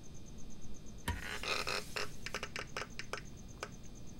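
A quiet series of light, irregular clicks and taps, about eight over two and a half seconds, some in quick succession.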